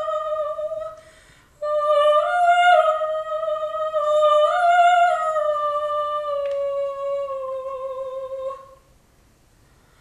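A female opera singer sings solo. A falling phrase ends about a second in; after a short breath comes one long phrase held around one pitch, with two small lifts. It dies away near the end.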